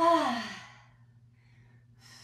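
A woman's short voiced exhale of effort, falling in pitch, as she lowers into a tricep push-up from her knees. Faint breathing follows.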